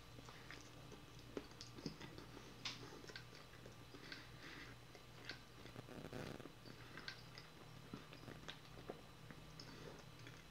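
Faint close-up chewing of a honey bun and fried Spam sandwich, with many small wet mouth clicks scattered through.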